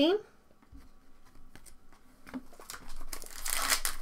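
A few light clicks of cards being handled, then, in the last second or so, a trading-card pack's foil wrapper crinkling loudly as it is torn open.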